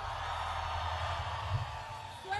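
Concert crowd noise, an even wash of many voices, just after a song's last note ends, over a low steady hum from the sound system.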